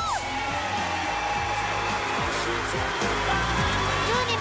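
Studio audience applauding steadily over background music.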